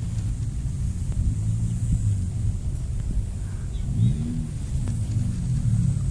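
A steady low rumble of outdoor background noise.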